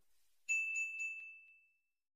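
Notification-bell sound effect: a single bright ding about half a second in, with a few light ticks, ringing out over about a second.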